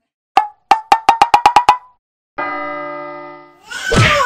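A run of about ten short, pitched pops that speed up, an edited comedy sound effect, followed by a held ringing chord that slowly fades. Voices rise into a shout at the very end.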